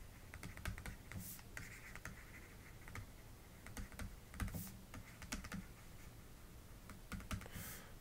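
Faint, irregular small clicks and short scratches of a pen stylus writing by hand on a tablet surface.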